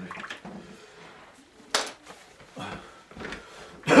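Faint muttering and small handling noises, with one sharp click a little under two seconds in.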